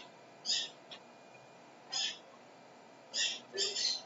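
A bird chirping: four short, high-pitched calls spaced irregularly across a few seconds.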